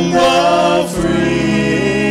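Mixed vocal trio, two men and a woman, singing in harmony through microphones; one phrase ends about a second in and a new chord is held after it.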